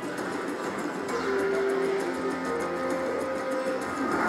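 Slot machine game music playing while the reels spin, with several held notes coming in about a second in.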